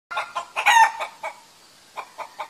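Chickens clucking: a quick run of short calls with one louder, longer squawk just under a second in, dying away by about a second and a half.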